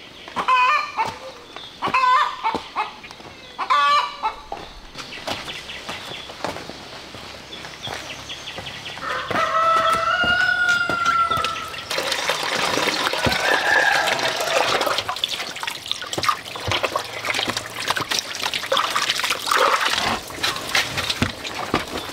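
Chickens calling in short pitched clucks about every second and a half, then a rooster crowing in one long call of about three seconds. Then water from a plastic tank's tap splashing into a metal basin, a steady spattering rush through the last ten seconds.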